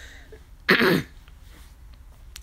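A woman clears her throat once, briefly, about two-thirds of a second in.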